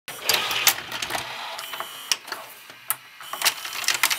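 Sharp mechanical clicks and clatter of a VHS cassette being loaded into a video cassette player, a run of clicks over a steady hiss, loudest near the start and again near the end.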